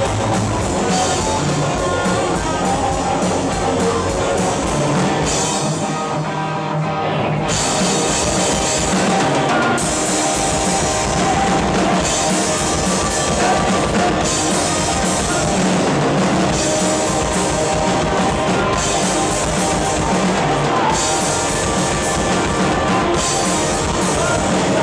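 A rock band playing live and loud: electric guitars, bass and a drum kit. The cymbals drop out for a couple of seconds about six seconds in, then the full band comes back in.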